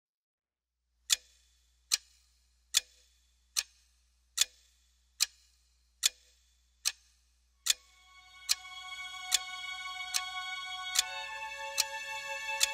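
A clock ticking steadily, about five ticks every four seconds, starting a second in. After about seven seconds, sustained music chords swell in beneath the ticking.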